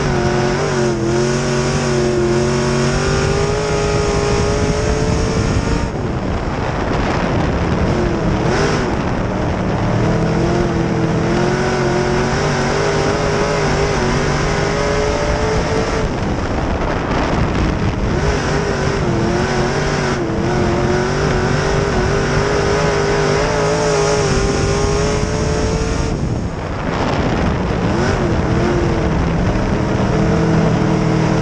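B-Modified dirt race car's engine heard from inside the cockpit at racing speed. It climbs in pitch for several seconds, then drops off, a cycle that repeats about every ten seconds as the car laps the track.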